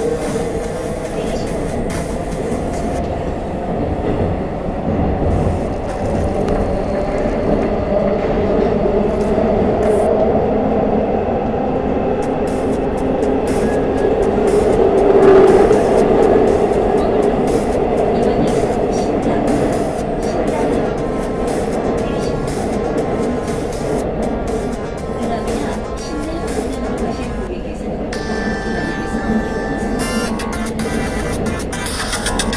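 Inside a Seoul Metro Line 2 subway car running between stations: a steady rumble of wheels and running gear that swells louder about halfway through. Near the end a few steady tones start over the rumble.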